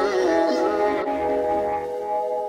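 Background music: held chords with a wavering melody line over them.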